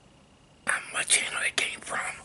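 A man whispering close to the microphone: breathy, unvoiced syllables that begin about two-thirds of a second in, after a brief quiet.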